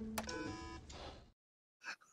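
A single sharp click of an office desk phone's intercom button over a held chord of soft background music that fades out. The sound then cuts off to dead silence a little past the middle.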